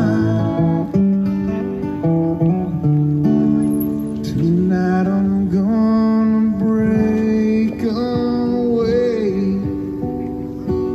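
Live acoustic guitar music with a voice holding long, wavering notes over the guitar.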